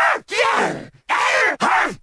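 A person making drawn-out groaning and yelling noises close to the microphone: about four short vocal bursts, each sliding in pitch, chopped apart by abrupt cuts.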